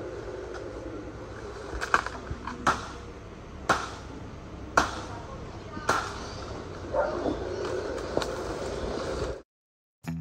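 A bushcraft knife blade chopping into palm fronds: a series of sharp chops, about one a second.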